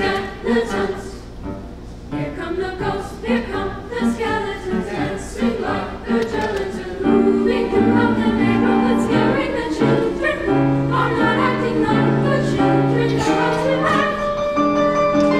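Mixed high school choir singing, the voices swelling into louder, sustained chords about halfway through.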